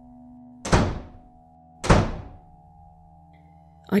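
Two heavy door slams, about a second apart, each dying away with a reverberant tail, over a steady, dark ambient music drone.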